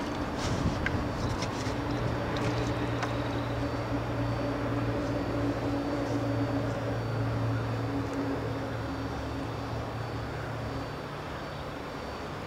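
A steady engine drone with a low hum that holds one pitch, easing off about eleven seconds in.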